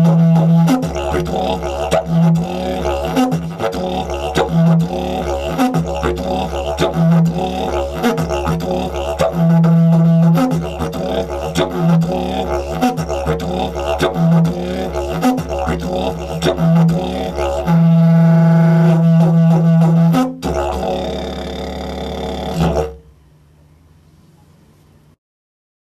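Yeti didgeridoo in C#, made of cottonwood, played in a loud rhythmic pattern. Long held drones alternate with stretches of quick pulsed notes on a deeper drone, made by loosening the lips. The playing stops abruptly about a second before the end.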